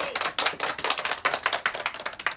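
A small group of about nine people clapping their hands together, a dense, irregular patter of many claps.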